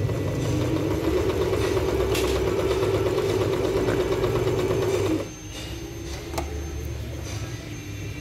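Singer Merritt electric domestic sewing machine running steadily, stitching through fabric, then stopping about five seconds in. A single click follows a second or so later.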